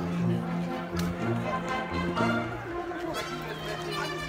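A live orchestra playing a holiday tune in long held notes.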